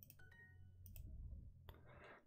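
Faint computer mouse clicks as an answer is checked on a computer, with a faint short two-note chime from the computer's speakers early on, over a low steady hum.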